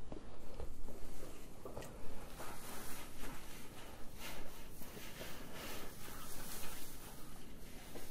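Dry hay rustling and crackling as a hand pulls compressed flakes apart in a barrel feeder, with many small irregular crackles.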